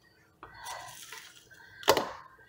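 A table knife cutting a stick of butter on its paper wrapper: a faint scrape and rustle as the blade goes through, then one sharp click as it comes down near the end.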